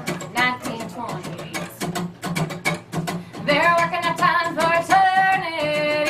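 A woman singing live to her own strummed acoustic guitar, the strumming steady and even. Her voice comes in more strongly about halfway through, holding long notes.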